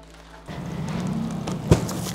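A plastic courier bag being opened, rustling and crackling, with one sharp snap about three-quarters of the way through, over background music.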